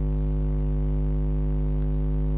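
Steady, loud electrical mains hum with a buzzy stack of overtones, unchanging throughout and carried on the recording's audio chain.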